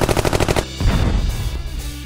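Dubbed-in cartoon impact sound effect for a toy headbutt: a fast, even rattle of hits like machine-gun fire that stops about half a second in, followed by a deep boom, over background music.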